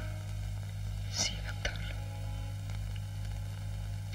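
Steady low hum and hiss of an old film soundtrack, with a faint brief sound about a second in.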